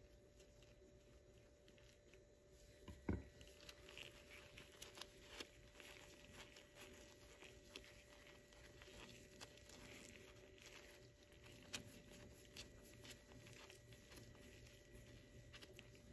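Near silence: faint rustles and small clicks from nitrile-gloved hands handling rubber caliper piston seals, with one slightly louder click about three seconds in.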